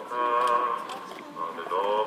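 A singing voice chanting in long held notes that slide between pitches, in a solemn, liturgical-sounding style.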